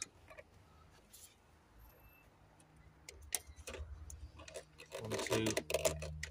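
Scattered light plastic clicks and taps as fuel hose quick-connectors are handled and pushed back onto a diesel fuel filter housing, over a faint steady low hum.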